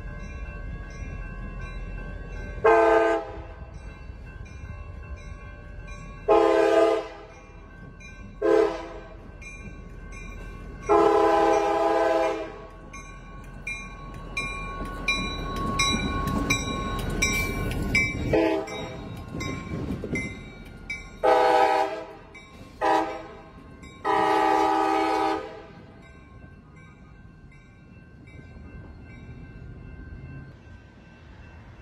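CSX diesel freight locomotive blowing its multi-chime air horn for a grade crossing in long and short blasts, in two sequences. Between them the engine rumble and wheel noise swell as it passes close by, then fade as it moves away, with a crossing bell ringing steadily in the background.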